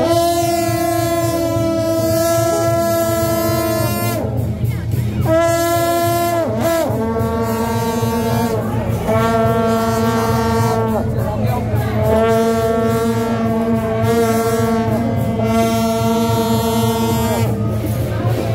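Suona (Taiwanese reed horn) playing loud long held notes, stepping between pitches every few seconds with short breaks and a quick pitch bend about six and a half seconds in.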